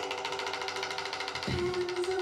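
Live band music: a drum kit played with a very fast, even stream of stick strokes on the toms over a held pitched note, with a low drum hit about one and a half seconds in.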